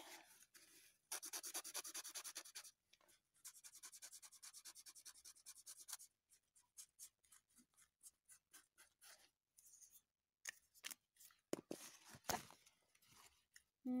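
Felt-tip marker scribbling on a paper towel in quick back-and-forth strokes, colouring it in. The strokes come in two runs about a second apart, then turn sparse, with a few sharp clicks near the end.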